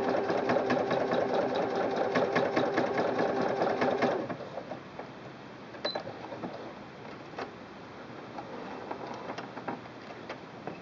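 Singer Quantum Stylist 9960 computerized sewing machine stitching at speed with a twin needle: a rapid, steady clatter of the needle bar. It stops about four seconds in, and a few light clicks follow.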